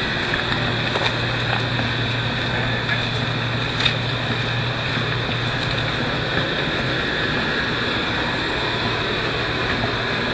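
Steady hum of a boat's engine idling at the dock, with wind rumbling on the microphone.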